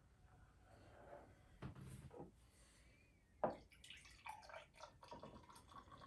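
Lager poured from a glass bottle into a pint glass: a faint splashing trickle with fizzing as the head forms, and a single knock about halfway through.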